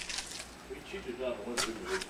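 Blue painter's tape being peeled off a wooden box, giving a few short rasps, with faint low murmuring voices beneath.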